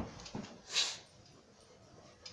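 Handling noise from a backpack being packed: a knock at the start, then a short rustling hiss about three quarters of a second in.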